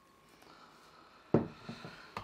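A glass soda bottle set down on a hard surface: one short knock about a second and a half in, with faint handling rustle around it.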